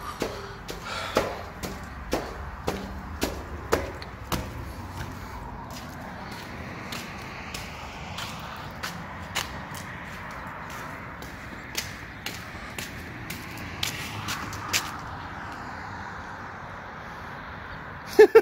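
Footsteps climbing hard concrete stairs, about two steps a second, for the first four seconds or so. After that, steady wind buffeting the microphone, with a few faint clicks.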